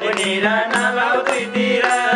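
Nepali dohori folk singing accompanied by a harmonium's steady held notes and a madal hand drum beating a regular rhythm.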